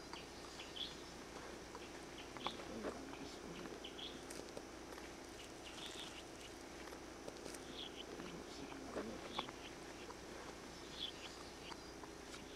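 Faint outdoor forest ambience: short, high chirps every second or two over a steady low hum, with a few soft clicks.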